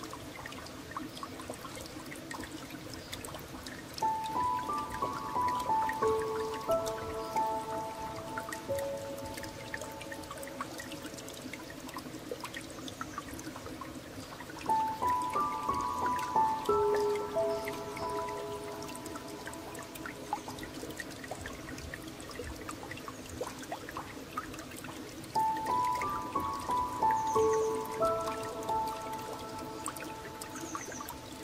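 A short, gentle piano phrase of a few notes, heard three times about ten seconds apart, over a steady wash of flowing water with scattered light drips.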